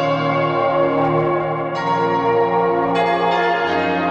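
Intro theme of ringing bell tones, layered notes held and overlapping, with new strikes entering about two seconds and three seconds in.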